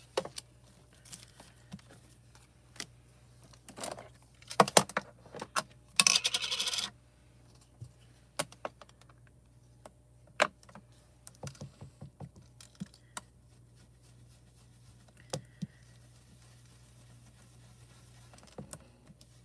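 Scattered clicks and knocks of plastic craft supplies being handled as an oval ink pad is picked up and its plastic lid taken off, with a short louder rattle about six seconds in.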